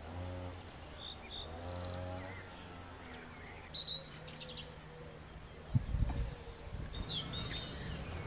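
Small birds chirping around a rural yard, with a low drawn-out call twice in the first two seconds and a sharp thump a little before six seconds in.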